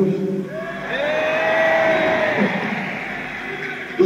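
Arena audience giving a long collective vocal call, held for about a second and a half and slightly arched in pitch, over general crowd noise.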